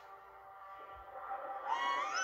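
Cartoon soundtrack played through a laptop's speakers: soft, steady background music, with a rising pitched cry near the end.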